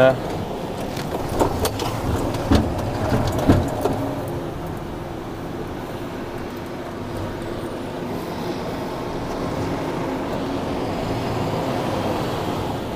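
Diesel engine of a rigid tipper lorry running steadily at low speed, heard from inside the cab, with a few short knocks in the first four seconds.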